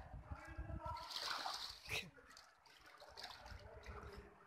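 Shallow muddy water splashing and sloshing around a person wading and moving his hands through it, with faint voices.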